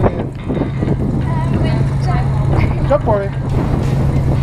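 Wind buffeting an action-camera microphone, with a steady low hum underneath and a few brief snatches of voice.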